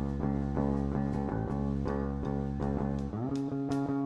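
Live band's song intro: guitar playing a steady rhythmic pattern over sustained chords, moving to a new chord about three seconds in.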